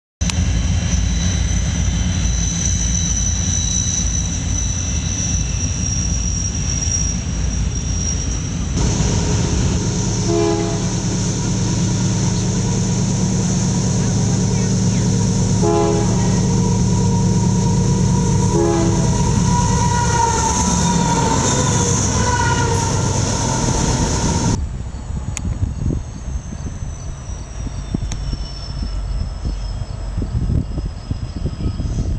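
Freight diesel locomotives running past at close range, a dense steady rumble. Partway through, an approaching CSX locomotive sounds its air horn in three short blasts, then a longer sounding of several seconds that ends abruptly, leaving a quieter distant train rumble.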